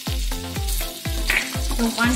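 Butter cubes sizzling as they melt in hot oil in a non-stick frying pan, the hiss growing toward the end. Background music with a steady thumping beat plays over it.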